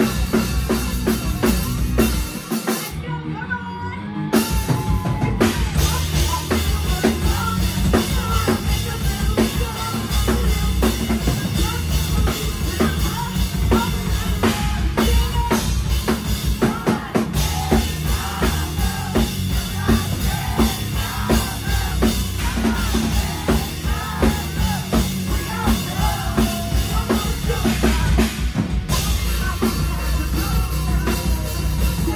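Live rock band playing loud: pounding drum kit with bass drum and snare, guitar, and a female lead vocal. The band drops out briefly about three seconds in, then the full band comes back.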